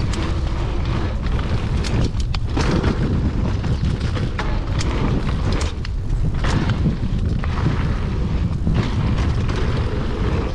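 Giant Trance full-suspension mountain bike ridden fast down a dirt singletrack: a constant heavy rumble of wind buffeting the microphone and tyres rolling over dirt. Frequent sharp rattles and knocks from the bike over bumps run through it.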